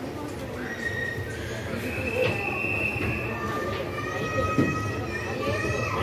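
People's voices on a busy railway platform over a steady low rumble, with several drawn-out high-pitched tones of about a second each.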